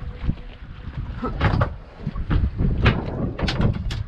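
A string of irregular knocks and clatter on a boat deck as someone moves about and handles gear, over a low rumble of wind on the microphone.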